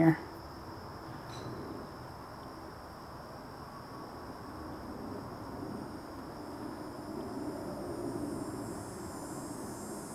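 Quiet outdoor background: a low, even rush with a steady thin high-pitched tone throughout, and a faint click about a second in.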